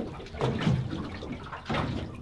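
Water sloshing and lapping against the hull of a small drifting boat, with a short louder sound near the end.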